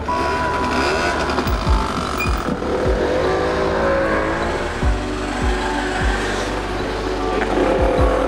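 A small delivery motorbike's engine revving as it pulls away and passes, its pitch rising and falling around the middle. Background music with a deep beat plays under it.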